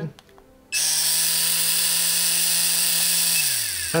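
A pen-style rotary tattoo machine running on a Critical wireless battery pack. It starts about three-quarters of a second in with a steady, high buzzing whine, then winds down in pitch near the end as it is switched off.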